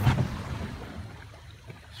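A boat's engine rumble dying away in the first moments, leaving only faint wind and water noise. A single sharp knock comes right at the start.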